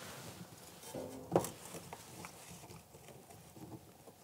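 Faint handling noise of a new plastic dishwasher water inlet valve and its rubber drain hose being fitted by hand: a few soft clicks and knocks, the most distinct about a second and a half in, over quiet room tone.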